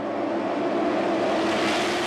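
A pack of NASCAR stock cars' V8 engines running flat out as they pass, a steady drone at one pitch that swells slightly.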